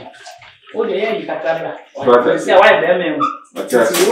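Speech only: a person talking in three short stretches with brief pauses between.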